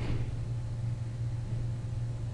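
Steady low hum with hiss, with a brief soft rushing noise right at the start.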